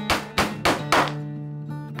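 A small hammer tapping, tacking pieces of tin onto a board: about four quick strikes in the first second, then a pause, over background music.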